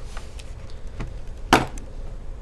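A small screwdriver set down on a desk with one sharp knock about one and a half seconds in, after a few fainter clicks, over a low steady hum.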